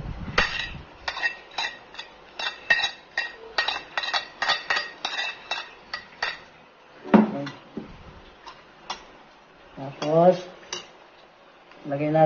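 Metal spoon clinking and scraping against a ceramic plate as chopped onion, chili and ginger are pushed off it into a steel pot: a quick run of sharp clinks, about three or four a second, for the first six seconds. A short bit of voice follows, twice.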